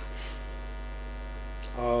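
Steady electrical mains hum, with a man's voice starting a word near the end.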